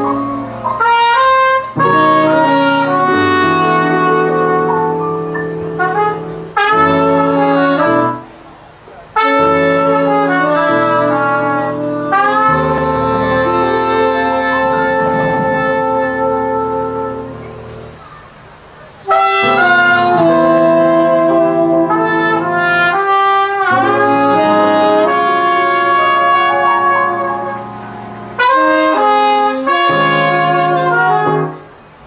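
A live jazz band: a trumpet and a saxophone play melody phrases together over bass, with short breaks between the phrases.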